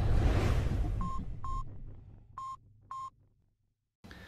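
Intro logo sound effect: a deep boom fading away, then four short electronic beeps at one pitch, in two pairs, after which the sound cuts to silence.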